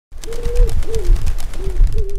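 Pigeon cooing: four low coos in a row, over a rustling noise.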